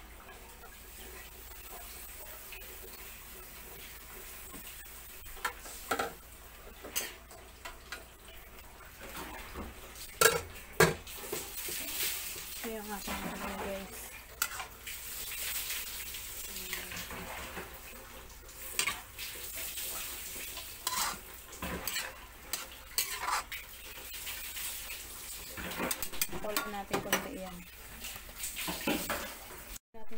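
Metal spatula stirring and scraping in a wok, with sharp knocks of metal on the pan scattered throughout, over a steady sizzle of bitter gourd sautéing in oil.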